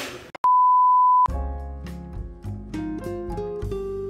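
A single steady electronic beep lasting under a second, followed about a second in by gentle instrumental music of plucked notes stepping upward in pitch.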